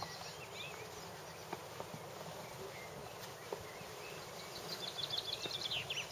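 Quiet outdoor ambience: a steady low hiss with faint bird chirps, and a quick run of chirps near the end.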